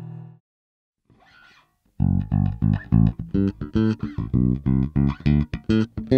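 Sadowsky Metro RV4-22 four-string electric bass played fingerstyle, heard through the direct output of a Markbass SD800 amp. After a short pause it comes in about two seconds in with a quick run of plucked notes.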